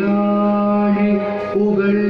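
Carnatic-style devotional music: a voice holds one long, steady note, with a brief turn in pitch about one and a half seconds in.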